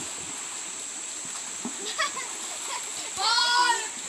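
Children splashing and playing in a shallow stream, with a child's high-pitched shout about three seconds in. A steady high whine runs underneath.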